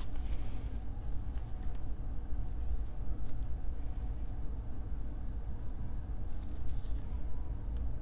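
Steady low background hum, with a few faint light clicks from small parts being handled.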